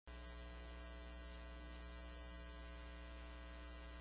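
Faint, steady electrical mains hum on the audio feed: a low, even buzz that does not change.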